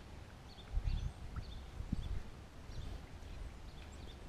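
Footsteps on a wet path of grid paving blocks, with a few heavier low thuds about a second and two seconds in.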